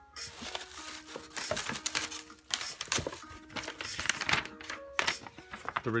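Paper and packaging rustling and crinkling in irregular handling noises as a sheet of paper is lifted out of a cardboard box, over soft background music.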